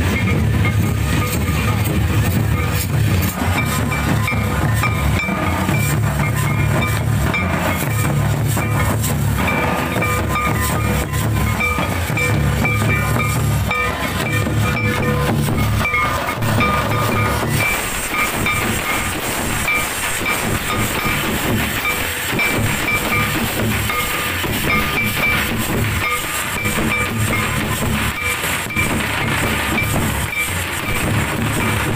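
A group of stick-beaten barrel drums playing a fast, dense dance rhythm for a Santali dhabul dance, with a steady high note sounding above the beat. The deep drum strokes thin out a little past halfway.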